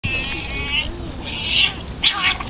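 Otters giving high, squeaky chirping calls: one call with a rising-and-falling pitch in the first second, then a second, louder squeal about a second and a half in.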